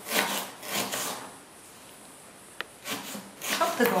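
Kitchen knife slicing through an onion on a cutting board: a few short, crisp cutting strokes in the first second and a half, then a quiet stretch with one light click.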